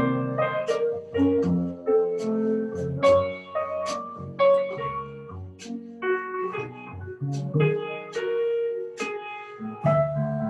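Jazz piano trio playing: acoustic grand piano chords and melody over upright bass notes, with drum-kit strokes about once a second.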